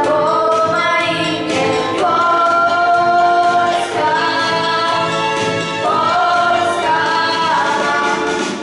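Two girls singing a song together into handheld microphones, in long held notes that glide from one pitch to the next.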